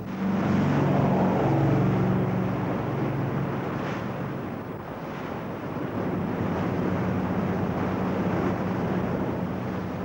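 Motor lifeboat running at speed through rough sea: a steady engine drone under rushing water and spray, with wind buffeting the microphone. The sound dips and changes about halfway through, then steadies again.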